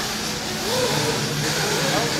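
Steady background noise of a busy RC racing pit area: a constant mechanical hum under faint chatter from people around.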